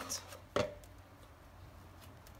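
Faint sounds of a hand squeezing and pressing a ball of salt dough in a plastic mixing bowl, with one short sharp knock about half a second in.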